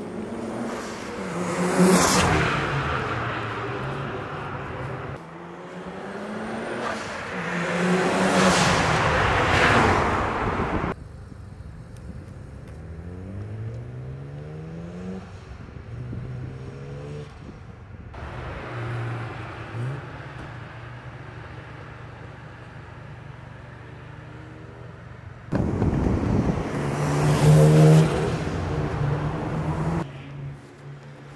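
Single-turbo Mazda RX-7 FD's two-rotor rotary engine driving past at speed three times, each pass rising to a peak and fading. In between, the engine revs up with its pitch climbing, and the sound changes abruptly at a few cuts.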